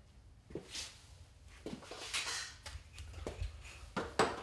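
Faint, scattered knocks and rustles of a person moving about and picking up a hand saw, over a low background hum.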